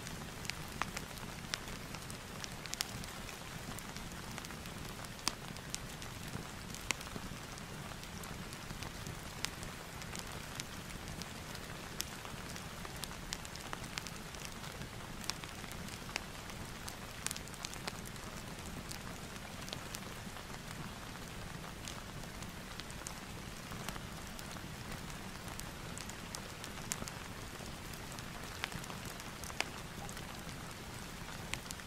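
Steady rain ambience layered with a fireplace, an even hiss broken by many scattered sharp pops and crackles.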